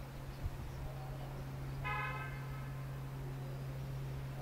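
Horn of a VT 798 Schienenbus railbus sounding one short toot about two seconds in, over the steady low hum of the idling diesel engine.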